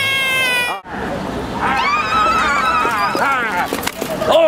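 Excited high-pitched voices: a long held call that cuts off suddenly under a second in, then, over the noise of a street crowd, another high, wavering drawn-out vocal call.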